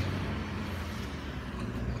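Steady street traffic noise: a motor vehicle's engine running nearby, a low rumble under an even hiss.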